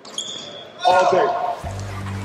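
A basketball bouncing on a hardwood gym court, with a man's loud voice about a second in. A steady low music drone comes in near the end.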